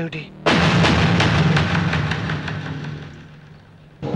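A sudden loud dramatic hit in the film score about half a second in: a quick run of percussion strokes over a low held tone, dying away over about three seconds.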